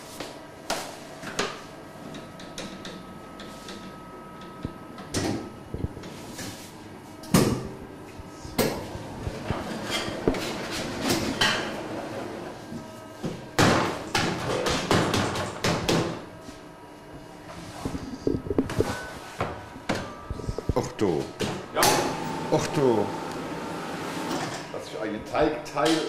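Irregular knocks, clunks and clatter of bakery equipment being worked by hand, first a dough sheeter and then a dough divider press, over a faint steady hum.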